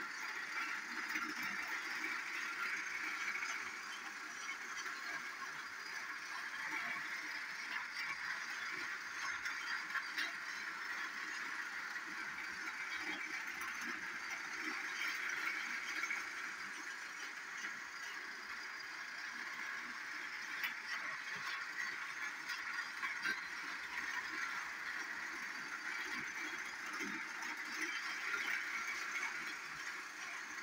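Tomy Fearless Freddie battery-powered toy train running laps of its plastic track: a steady motor whirr with light clicks from the wheels, rising and falling in loudness as it goes round the oval.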